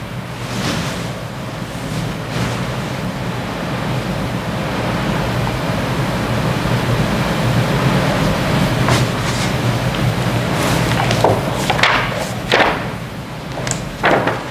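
Steady hiss and low hum of room and recording noise, with a few short rustles of paper being handled in the last few seconds.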